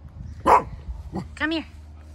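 A corgi barks once, loud and sharp, about half a second in, then gives a shorter pitched call about a second later.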